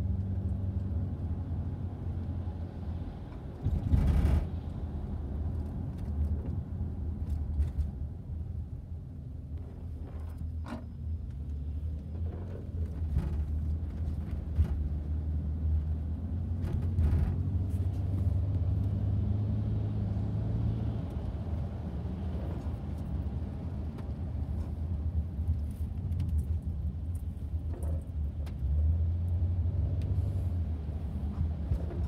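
Engine and road noise inside a moving car's cabin: a steady low rumble, with a brief loud thump about four seconds in.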